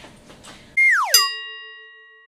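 Edited-in transition sound effect: a quick falling whistle-like glide, then a bright bell-like ding that rings and fades away over about a second.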